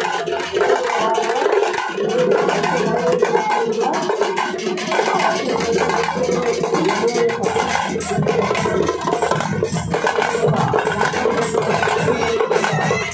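Live folk drumming on hand-held festival drums, sharp strokes going on without a break, with a wavering sustained melody line over them.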